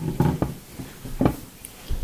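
A few short taps and clicks as a Sharpie marker and its cap are handled over paper on a tabletop.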